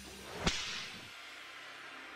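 Logo-reveal sound effect: a single sharp whip-like crack and swoosh about half a second in, trailing off quickly, over a low synthesized drone that drops away about a second in.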